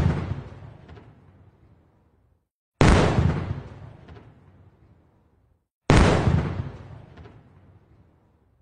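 Artillery shell explosions: three booms about three seconds apart, each hitting suddenly and dying away over about two seconds.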